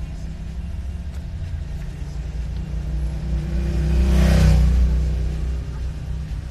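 Road and engine noise inside a moving car's cabin: a steady low rumble that swells into a louder rush about four seconds in, then eases off.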